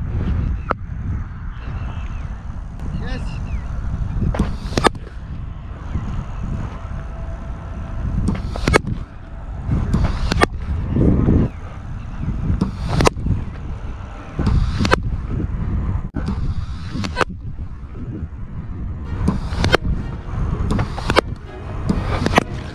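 Wind buffeting a helmet-mounted action camera's microphone, with a dozen or so sharp knocks at irregular intervals.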